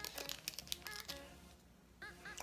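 Faint crinkling and small clicks of a Duvalin candy's plastic packet being peeled open by hand, dying away to near silence near the end.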